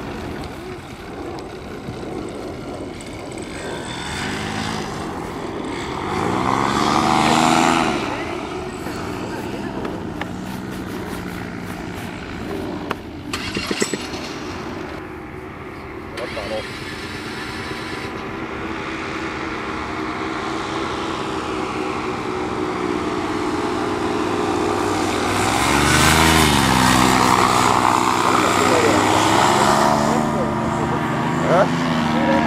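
Paramotor engines and propellers flying low past, the engine note swelling and its pitch bending as each one passes; loudest about seven seconds in and again near the end.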